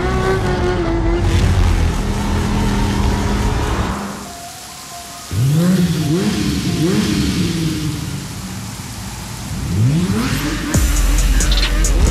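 Motorcycle engine revving: a steady run, then a brief drop, then three quick blips about two-thirds of a second apart, each rising in pitch. Another rising rev near the end settles into a loud, steady high-rev run.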